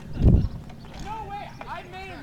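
People's voices talking at a distance, with a brief, loud low thump about a quarter second in.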